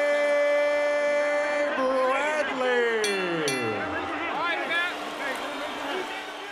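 Boxing ring announcer's drawn-out call of the winning fighter's surname: one long held note for nearly two seconds, a second shorter note, then a long falling glide in pitch, over steady arena noise.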